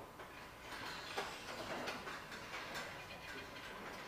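Faint, scattered clicks of computer keyboard keys, a few irregular taps spread through a quiet room.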